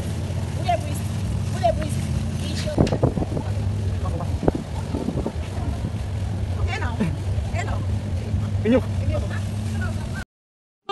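Scattered voices and short shouts over a steady low hum.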